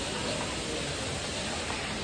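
Waterfall: a steady, even rush of falling water and spray.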